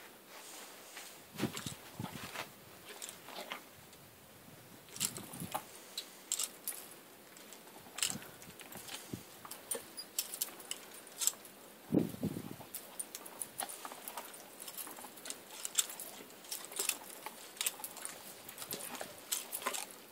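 Metal spade bit and its chains clinking and jingling irregularly as the tied horse mouths and champs the bit. A few duller low thuds come in between, the longest about twelve seconds in.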